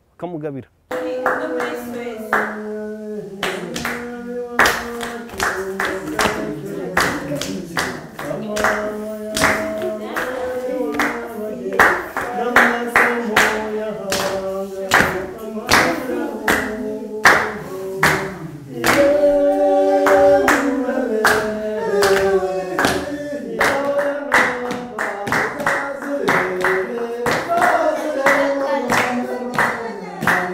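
Rwandan traditional dance song: several voices singing with steady rhythmic handclapping, starting about a second in.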